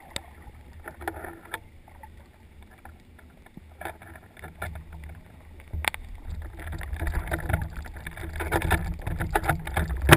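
Underwater sound picked up through a camera housing: a low rumble of moving water with scattered clicks and crackles. There is one sharp click about six seconds in, and the noise grows louder toward the end.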